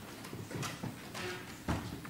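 Scattered footsteps, wooden knocks and rustling as people move about on a wooden floor and pews, the loudest knock near the end.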